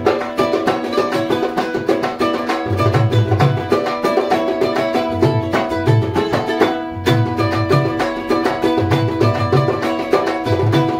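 A ukulele strummed briskly, with a hand-played dhol barrel drum adding low bass strokes in repeating groups.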